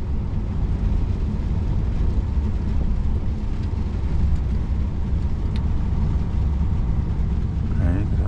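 Steady low rumble inside a lorry cab as the truck drives slowly at about 50 km/h: diesel engine and tyre noise, with no change in pitch.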